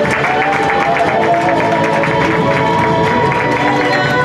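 Loud music with long held notes, over a crowd applauding and cheering.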